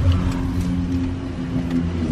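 Car engine running, heard from inside the cabin as a steady low drone.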